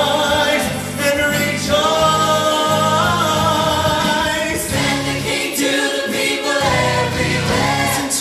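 A gospel-style vocal group of men and women singing together in harmony, with instrumental accompaniment underneath.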